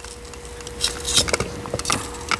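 Metal tool scraping and crunching around the inside of a terracotta pot, cutting through packed roots to free a root-bound succulent. It comes as a run of irregular scrapes and clicks, growing busier about a second in.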